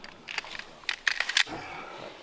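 Sharp metallic clicks and clacks of firearms being handled during a weapons function check, with a quick cluster of clicks a little past halfway.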